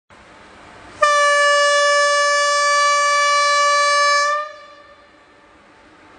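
Indian Railways locomotive horn sounding one long blast of about three and a half seconds at a single steady pitch, starting about a second in; afterwards the faint rumble of the approaching iron ore train.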